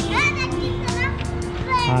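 A young child's high voice calling out in short rising cries, three times, over steady background music.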